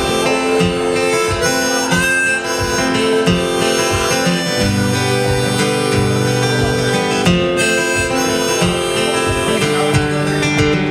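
Harmonica in a neck rack playing a melody of held, changing notes over a strummed acoustic guitar, in a folk instrumental passage.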